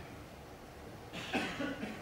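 A single short cough a little over a second in, over the faint hush of a quiet snooker arena.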